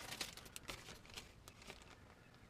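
Faint crinkling of a plastic zip-top bag being handled: a run of small crackles that thin out near the end.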